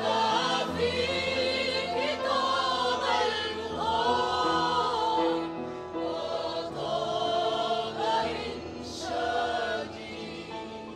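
Mixed choir of men's, women's and children's voices singing in parts, accompanied by a Baldwin upright piano.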